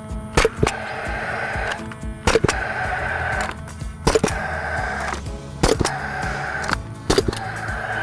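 Cordless Delfast power stapler firing fence staples into a wooden post through woven wire: sharp cracks, about every one to two seconds, most in quick pairs, over background music.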